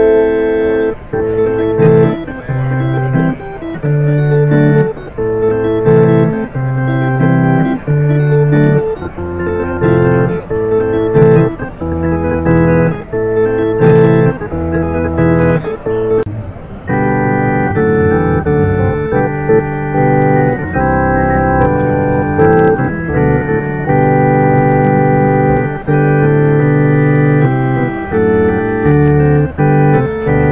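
Hammond Porta-B portable clonewheel organ being played. For about the first sixteen seconds it plays short, rhythmic chord stabs over a moving bass line. It then moves to fuller, longer-held chords with more brightness.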